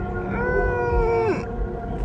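A nervous closed-mouth whimper, held for about a second, then sliding down in pitch as it cuts off, over a steady low background music drone.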